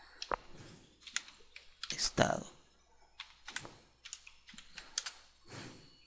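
Typing on a computer keyboard: a run of irregular keystrokes and clicks as a word is entered. The loudest knock comes about two seconds in.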